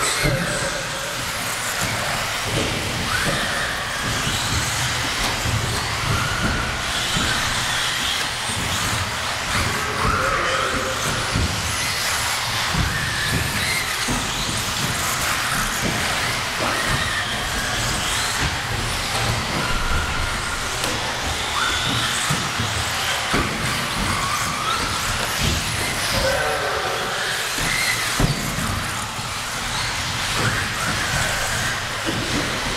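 Several 1/10-scale 4WD electric RC buggies racing in a hall: a steady din of small motors whining up and down in pitch as the cars accelerate and brake, with frequent knocks and clatter from the cars on the track.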